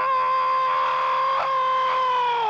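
A commentator's long drawn-out goal shout, held loud on one high, steady note.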